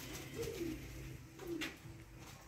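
A pigeon cooing: two short falling coos about a second apart.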